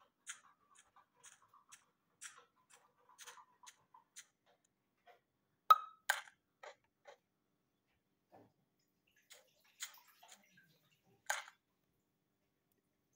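Faint, irregular clicks and taps. The sharpest click comes just before halfway, with a few more soon after and another near the end.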